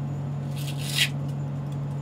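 A Velcro fastening tearing open in one short rasp, about half a second long and ending around a second in, as a camera with a long telephoto lens is pulled off the wall. A steady low hum from the space station's cabin fans runs underneath.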